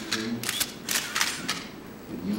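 Press photographers' still-camera shutters clicking several times in quick, irregular succession.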